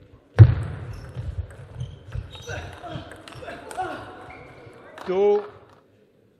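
Table tennis rally: a celluloid-style plastic ball clicking off rackets and the table in quick succession, after a heavy thump about half a second in. A short loud voice is heard near the end as the rally finishes.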